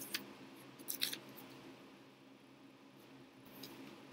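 Sheet of paper being handled for gluing: short crinkles at the start and about a second in, then faint rustling over a low steady hum.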